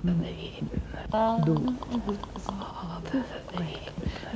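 A woman's voice in futurist sound poetry for voice on magnetic tape: short pitched syllables and brief held tones, broken up by mouth clicks and breathy hisses, with no ordinary words.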